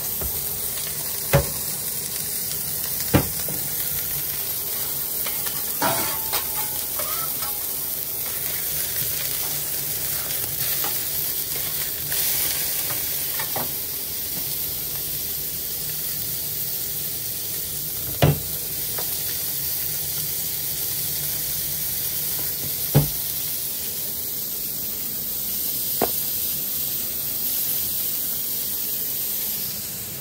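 Beef burger patties sizzling on a flat-top griddle, a steady hiss, with a few sharp metallic knocks of kitchen utensils now and then.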